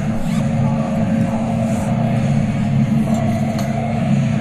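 Steady low rumble of machinery in a metal fabrication workshop, with a faint steady hum above it and a few faint clicks.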